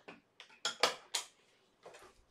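A water bottle being handled and set down on a desk. A quick run of four sharp clicks and knocks starts about half a second in, and one more comes near the end.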